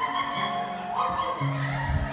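Soft instrumental background music of sustained held chords, the notes changing about a second in and again a little later.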